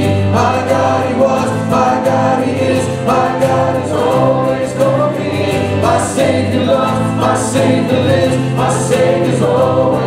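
A live worship band playing a contemporary praise song: a man and a woman singing together over acoustic guitar, keyboard and drums, with steady low sustained notes underneath.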